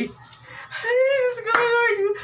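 A high-pitched voice holding one long drawn-out vocal sound, with a single sharp hand clap about one and a half seconds in.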